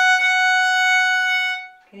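Violin playing one long, steady bowed note that fades out shortly before the end.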